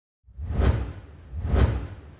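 Two whoosh sound effects about a second apart, each swelling quickly and falling away, with a deep rumble underneath: the sound design of an animated logo intro.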